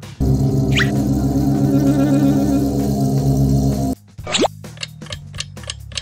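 A sound clip with a dense, steady low drone and a brief falling whistle about a second in plays for about four seconds, then cuts off suddenly. A quick rising glide follows, then rapid, even ticking like a quiz countdown clock.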